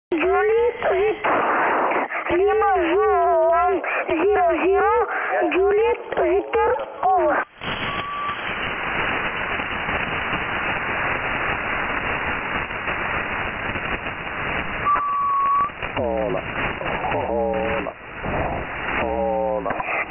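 Single-sideband voice from an amateur radio station on the 40 m band, heard through a software-defined radio receiver in lower-sideband mode, with a narrow, band-limited tone. About seven seconds in, the voice drops out to band hiss, with two short steady tones, and the voice comes back a few seconds before the end.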